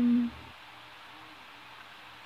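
A girl's voice holding a short, steady hummed "mmm" at one pitch, breaking off about a third of a second in, then only faint room hiss.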